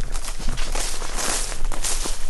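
Footsteps on a path of dry, cut grass mulch, the dried stalks rustling underfoot in an uneven rhythm.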